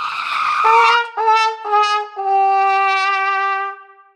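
A comedic brass 'wah-wah-wah-waaah' sad-trombone sound effect: four notes, each stepping a little lower than the last, with the final note held and fading out. A brief rushing swell comes just before the notes.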